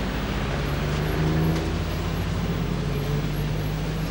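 Motor vehicle engine running with road traffic noise, a steady low engine hum under a continuous wash of traffic sound.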